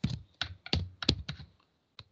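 Computer keyboard being typed on: a quick run of separate keystrokes that stops about a second and a half in.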